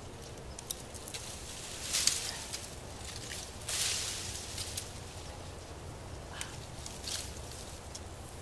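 Brush and berry vines rustling and crackling as long-handled loppers cut into them, with two louder rustling bursts about two and four seconds in and a few sharp clicks of the blades closing.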